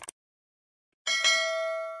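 A short click, then about a second later a bell sound effect rings once and fades out over about a second, several steady tones sounding together.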